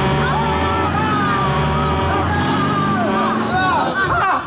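Loud vehicle sound effect of the bus swerving, with voices crying out over it.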